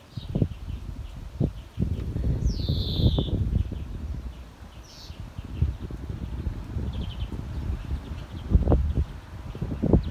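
Wind buffeting the microphone as a constant low rumble, with birds chirping. One bird gives a longer call falling in pitch near the start, followed by a few short chirps later.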